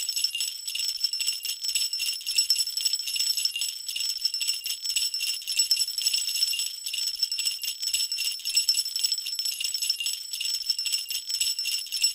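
Sleigh bells shaken continuously in a dense, even jingle with no lower notes underneath, a stock bell sound effect.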